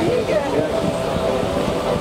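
Steady hum inside a parked Airbus A380's cabin, with passengers' voices talking in the background.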